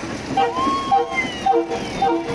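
A multi-tone horn tooting in short blasts, about four in two seconds. A long high tone rises and holds over the first blasts.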